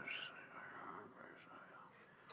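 Near silence: faint room tone, with a soft breathy whisper-like sound from the narrator right at the start.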